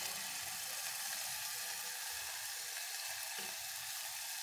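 Hot oil sizzling steadily in a pressure cooker, with mustard and cumin seeds and a spoonful of spice paste frying in it: the tadka stage of cooking.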